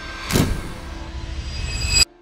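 Logo-animation sound effects: a whoosh about a third of a second in, then a rising swell that builds to a sharp hit at the end and cuts off suddenly.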